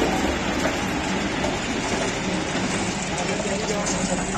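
Three-wheel road roller running steadily as it rolls along fresh asphalt, a continuous mechanical drone.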